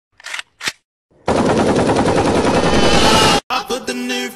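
A loud burst of rapid automatic rifle fire, about two seconds of fast, evenly spaced shots, cutting off suddenly. Two short sounds come before it. Just before the end, a new clip starts with voice or music.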